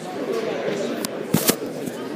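Murmur of voices and chatter echoing in a gymnasium, with two loud, sharp knocks close together about one and a half seconds in.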